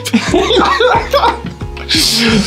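Men laughing and chuckling over a steady background music bed.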